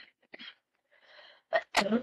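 A person's sharp cough near the end, preceded by a faint intake of breath.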